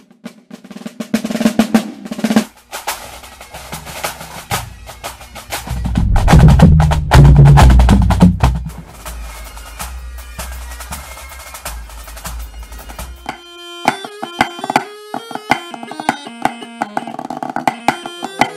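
Fast snare drumming with rolls and dense stick strokes, swelling in the middle into a loud deep drum rumble. About thirteen seconds in it gives way to a music track of short pitched notes with light percussive clicks.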